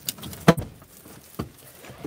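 Second-row captain's chair seat mechanism in a Kia Sorento, worked with its red release lever. There is a small click at the start, a sharp latch clunk about half a second in, and a second knock about a second later as the seat releases.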